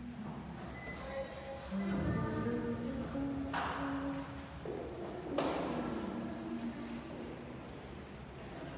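Background music of long held notes, with two brief swishing swells about three and a half and five and a half seconds in.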